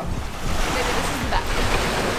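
Small sea waves breaking and washing up a sandy beach, a steady rush of surf.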